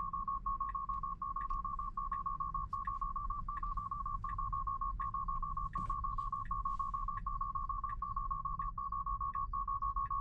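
Tesla Model 3 Autopilot take-control alarm: a rapid, continuous high-pitched beeping. It is the car demanding that the driver take over immediately after its hold-the-steering-wheel warnings were ignored.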